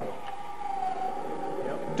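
Vertical bandsaw switched on at its push button, its motor starting and running with a steady whine of several tones.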